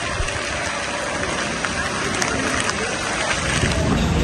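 Steady rushing noise of water on a flooded street, with no clear single event standing out.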